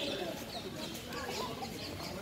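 Several birds chirping in short calls, a few each second, over distant people talking.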